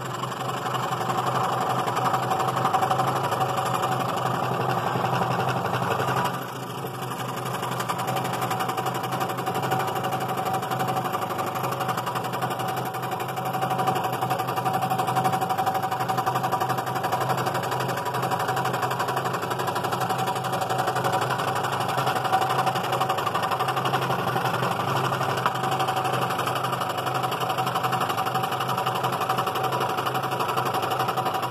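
Scroll saw running steadily, its #3 non-reverse-tooth blade sawing through a one-inch laminated walnut block. The sound is even throughout, with a constant tone, and briefly drops in level about six seconds in.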